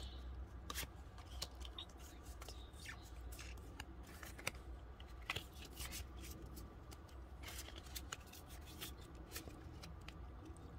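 Pokémon trading cards being handled and flipped through one at a time: faint, scattered clicks and slides of card stock over a low steady hum.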